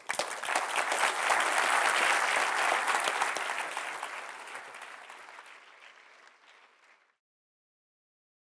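Audience applauding a speaker, quickly reaching full strength and then dying away over several seconds; the sound cuts off abruptly about seven seconds in.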